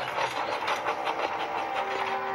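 Steam locomotive chuffing in a steady rhythm, about four beats a second. Music with long held notes comes in near the end.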